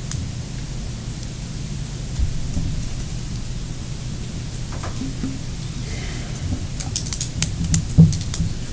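Steady hiss and low hum of a meeting-room microphone system during a pause, with a few faint clicks and rustles near the end.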